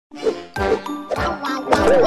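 A quick run of about five bright, bell-like dings, each struck sharply and left ringing: a cartoon chime sound effect or musical sting.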